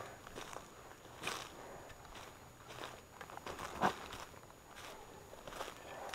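Footsteps crunching faintly and irregularly through dry leaf litter and grass, with one sharper crunch a little before four seconds in.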